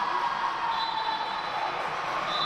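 Steady, echoing sports-hall noise during an indoor handball game: players moving on the court and voices carrying through the hall.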